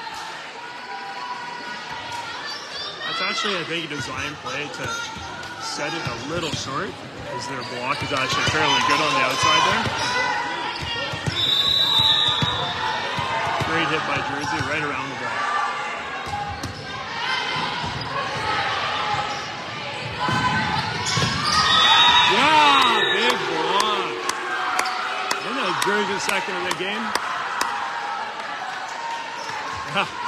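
Volleyball gym sound: a ball bouncing on the hardwood floor among many players' and spectators' voices talking and calling out, with a hall echo. Two short, high, steady tones sound, about a third of the way in and again past two-thirds.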